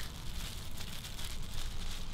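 Thin clear plastic bag crinkling as it is pulled up over a foot and leg.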